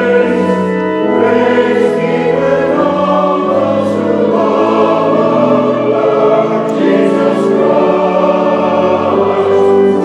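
Large mixed choir of men and women singing a sacred anthem in full harmony, with sustained chords that shift every second or so.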